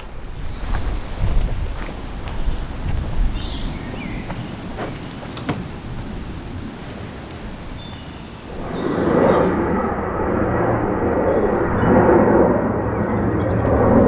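Wind buffeting the microphone with a low, gusty rumble. About two-thirds of the way in, this gives way to the steady, louder roar of a jet airliner flying overhead.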